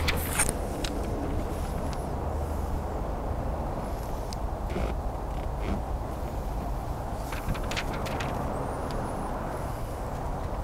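Outdoor background noise: a steady low rumble, with a few light handling clicks and two faint high chirps, about four and eight seconds in.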